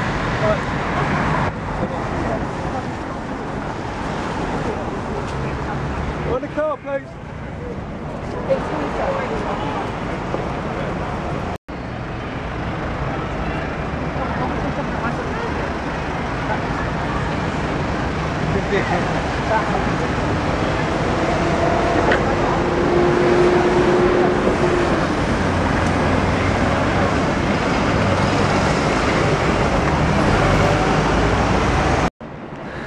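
Busy city street sound: steady road traffic with the voices of passers-by mixed in. The sound cuts out for an instant about a third of the way through.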